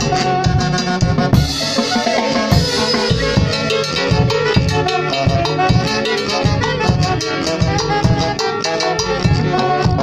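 A live folk orchestra playing: several saxophones carry the melody over timbales, cymbals and a bass drum keeping a steady beat. A cymbal crash rings for about a second, starting about a second and a half in.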